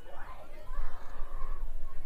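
Indistinct talking from people near the microphone, over a steady low rumble.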